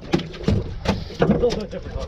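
Irregular knocks and slaps on a fiberglass boat deck, about five in two seconds, as a freshly unhooked fish flops on the floor, with low muttered voices in between.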